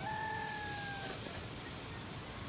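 A rooster crowing: one long held note of about a second, drifting slightly down in pitch, over a steady low outdoor rumble.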